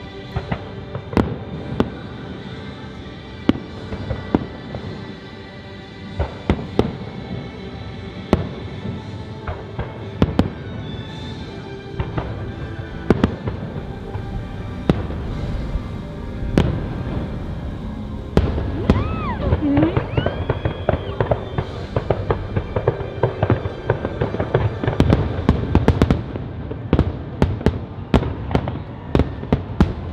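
Aerial fireworks shells bursting in a rapid run of sharp bangs, growing louder and denser in the second half, with music playing underneath.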